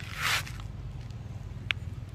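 A brief rustling scrape of a footstep on dry leaves and pavement, then a single sharp click near the end, over a low steady rumble.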